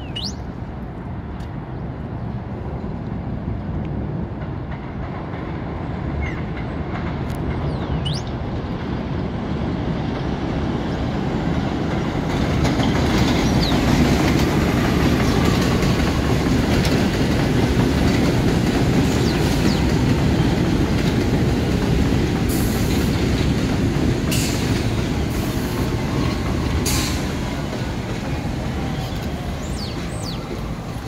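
R62A subway train rolling in along an elevated steel structure. Its rumble builds over the first half, peaks, then eases as it slows at the platform, with a faint wheel squeal and several sharp clicks of wheels over rail joints near the end.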